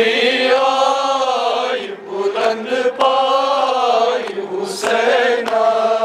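Men chanting a Kashmiri noha, a Muharram lament, led by one voice on a microphone, in long, wavering held phrases with short breaks between them.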